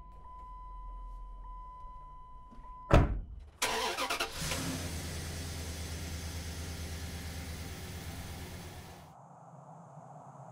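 A pickup truck's door slams shut, sharply, about three seconds in, cutting off a steady high beeping tone. A moment later the engine cranks briefly, catches and runs steadily, then falls away to a hiss near the end.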